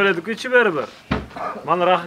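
Men talking, with one short dull thump about a second in.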